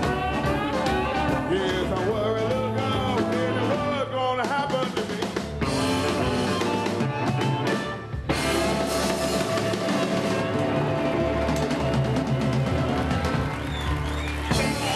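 Chicago blues band playing live, a lead line bending in pitch over bass and drums. About eight seconds in the sound dips briefly, then a long held note sounds over the band.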